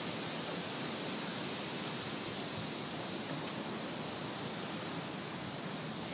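Steady, even outdoor background hiss with no distinct sounds standing out.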